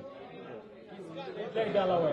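Low chatter of several voices in a room, with speech growing louder near the end.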